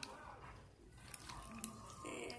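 Fingers pressing and poking a bubbly slime: a faint wet squishing with small sharp clicks as air pockets pop, one right at the start and a louder one about one and a half seconds in.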